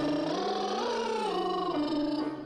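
One long sung note, held without a break, its pitch climbing over about a second and then sliding back down.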